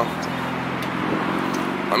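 A steady low engine hum, as of a car idling, over outdoor background noise.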